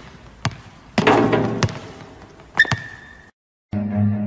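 A basketball striking a hardwood gym floor, with loud hits that echo around the empty hall and lighter taps between. The sound cuts off to a moment of silence near the end, and low bowed-string music begins.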